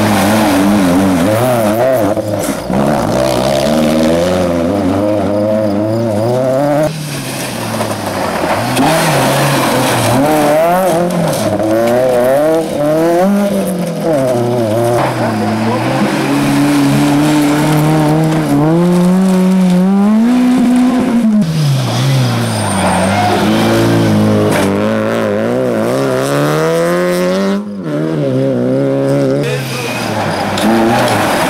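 Rally cars' engines revving hard through a gravel corner, one car after another, the pitch climbing and dropping with each gear change and throttle lift, over the hiss of tyres and sprayed gravel.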